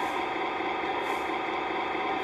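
Steady mechanical hum with several constant tones, a faint hiss swelling and fading about once a second.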